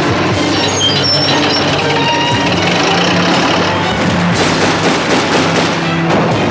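Dramatic action film score with heavy sustained low notes. In the last two seconds a rapid run of sharp bangs joins the music.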